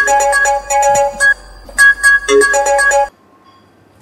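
Mobile phone ringing with a ringtone, a short electronic melody repeating, which cuts off suddenly about three seconds in as the call is answered.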